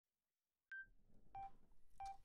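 Electronic metronome count-in: short pitched beeps about 0.65 s apart, the first higher as the accented beat, the next ones lower, sounding faintly before the band comes in.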